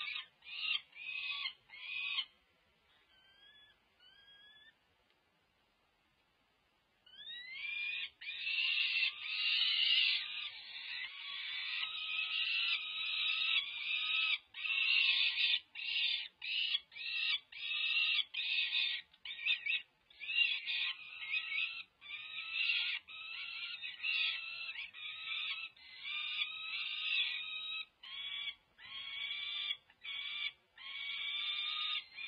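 Peregrine falcon chicks, about five weeks old, giving rapid, repeated, harsh food-begging calls at the nest. The calls break off about two seconds in, with only a few faint ones for several seconds, then resume almost without a break from about seven seconds on.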